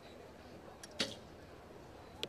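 Recurve bow shot: a faint click, then the single sharp snap of the bowstring as the arrow is released, about a second in.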